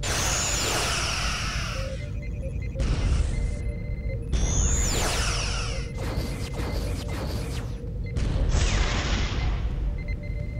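Sci-fi starship weapons sound effects: phaser and quantum torpedo fire in two volleys, at the start and about four and a half seconds in, each with falling electronic sweeps, and hissing blasts around three seconds and in the last two seconds. A steady hum and a low rumble run underneath.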